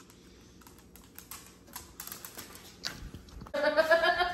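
Scattered light clicks and rustles of a handheld camera being picked up and moved around. A voice starts near the end.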